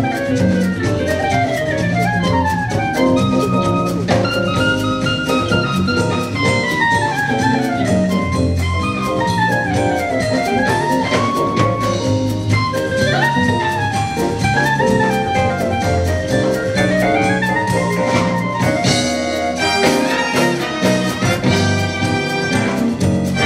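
Jazz big band playing, with a woodwind soloist carrying a flowing melodic line that runs up and down over the horns and rhythm section.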